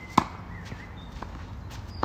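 Tennis racket striking the ball once in a topspin forehand: a single sharp pop about a fifth of a second in, followed by a few faint ticks.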